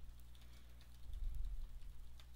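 Computer keyboard typing: quick, irregular keystroke clicks over a steady low hum that swells about a second in.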